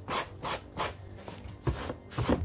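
Sandpaper rubbed by hand over carved polystyrene foam, in back-and-forth strokes about two or three a second.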